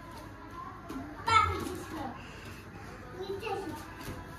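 Children's voices in a small room: a brief, loud, high-pitched child's call about a second in, then a softer voice near the end.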